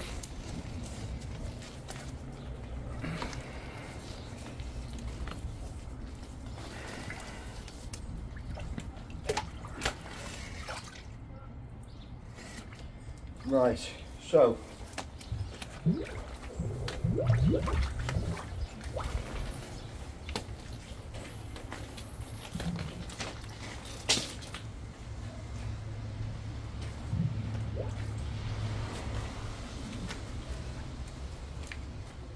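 Sectional drain rods being drawn out of a flooded manhole, with water dripping and sloshing as they come up. Brief bursts of a voice near the middle are the loudest sounds.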